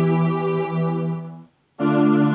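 Electronic keyboard playing a sustained chord on a string-ensemble voice. The chord is released about one and a half seconds in, and after a short silent gap the next chord of the progression comes in.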